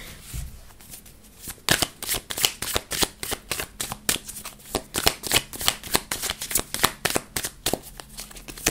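A tarot deck being shuffled by hand: after a quiet second or so, a steady run of cards slapping and riffling together, about three strokes a second.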